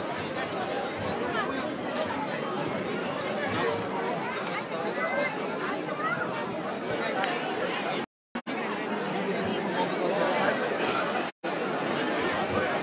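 Crowd chatter: many people talking at once in a busy, crowded hall, with no single voice standing out. The sound cuts out completely for a moment twice near the end.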